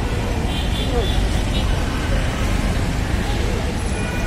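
Steady roadside traffic rumble from passing motor vehicles, with indistinct voices in the background and a few faint high tones about half a second to a second and a half in.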